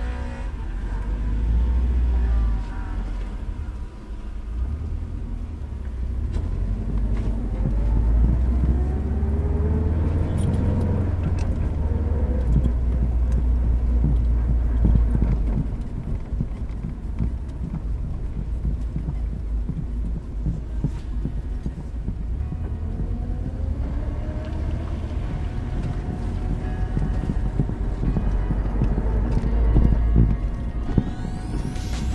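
A 2007 Subaru STi's turbocharged flat-four engine heard from inside the cabin, rising in pitch as the car accelerates, easing off, then pulling up again near the end, with a deep steady rumble. An electronic music track plays over it.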